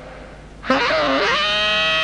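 A human voice breaks into a long, loud vocal cry about two-thirds of a second in, starting low, then rising in pitch and held.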